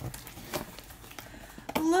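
A gift box and its contents being handled during unboxing: a few faint taps and small clicks.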